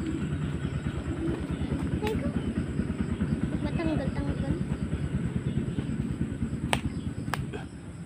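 An engine running, with a rapid low pulse that drops away shortly before the end. A few sharp clicks sound over it.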